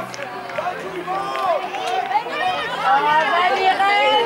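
Many high-pitched young voices shouting and calling over one another, a babble of children's chatter that grows louder in the second half.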